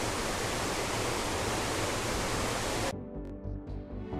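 Steady rushing noise of a large waterfall plunging into a spray-filled gorge. It cuts off suddenly about three seconds in, and music takes over.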